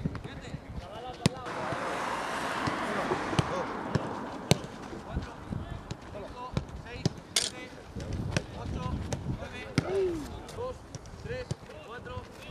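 Footballs being kicked on grass during a passing drill: a series of sharp, irregular strikes, the loudest about a second in and about four and a half seconds in. A rushing hiss runs from about one and a half to five seconds in.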